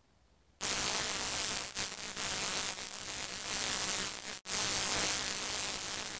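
Harsh buzzing static that starts about half a second in, drops out for an instant about four and a half seconds in, and cuts off abruptly at the end: a static-noise sound effect under the channel's logo outro card.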